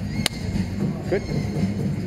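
A single sharp snap about a quarter second in, over a steady low hum, with a man briefly saying "good".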